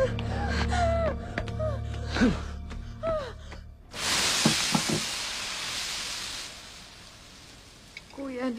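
A woman crying out and sobbing over a low droning film score; about four seconds in, a sudden loud hiss of food on a sizzling hot plate, fading over the next few seconds.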